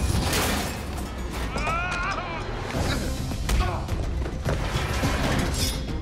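Fight scene soundtrack: dramatic score with a low rumble under it, punctuated by several sharp hits and thuds of blows. A voice cries out briefly about two seconds in.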